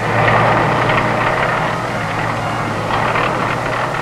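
Tracked armoured vehicles driving past, their engines running in a steady rumble with a constant low hum that starts suddenly.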